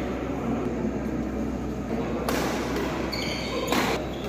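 Badminton play in an indoor hall: two sharp racket hits on the shuttlecock, after about two seconds and near the end, and brief shoe squeaks on the court floor, over a steady background noise.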